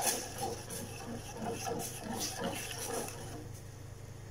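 A metal spoon stirring liquid in a stainless steel saucepan, scraping and tapping against the pan in soft, irregular strokes that thin out near the end, over a steady low hum.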